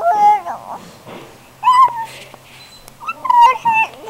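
A baby's loud, high-pitched squeals, three of them: one at the start, one near the middle and one near the end.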